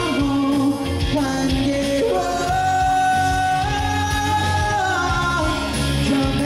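Male pop singer singing live into a microphone over musical accompaniment. He holds one long note from about two seconds in until just after five seconds, and it steps up in pitch midway.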